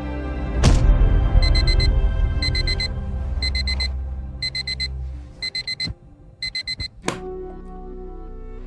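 Digital alarm clock beeping in quick groups of four, one group a second, six groups in all. Music plays under it, with a sharp hit about half a second in and another near the end.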